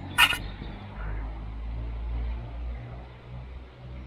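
Handling noise from a handheld remote controller and camera: one sharp click a moment in, then a faint low rumble.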